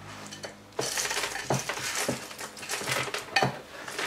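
Kitchen scraps bowl being emptied into a lidded plastic storage bin of organic waste: a busy run of rustling, knocks and clattering of the bowl and scraps against the plastic, starting about a second in.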